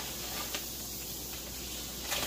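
Kitchen sink tap running steadily as hands are washed under it: an even rush of water.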